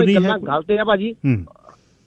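A man speaking in Punjabi for about a second and a half, his pitch falling at the end, followed by a brief faint beep and then quiet.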